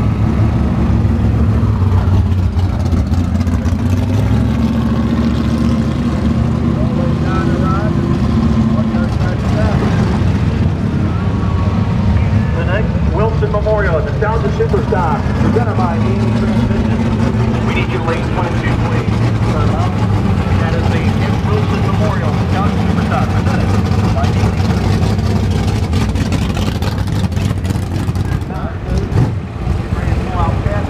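A vehicle's engine runs with a steady low drone as it drives slowly, its pitch shifting slightly about eight seconds in. Indistinct voices are mixed in around the middle.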